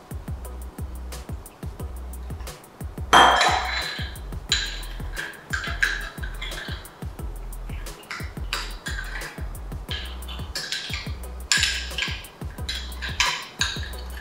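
Water poured from a glass jug into a ceramic ramekin of potash, a loud splash about three seconds in, then a metal spoon stirring and clinking repeatedly against the ramekin as the potash dissolves. Background music with a steady bass runs underneath.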